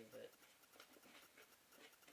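Near silence: room tone with a few faint ticks, after a brief spoken word at the start.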